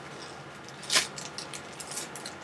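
Small plastic bags of diamond-painting drills crinkling as they are handled, with the drills rattling inside and one louder crinkle about halfway through.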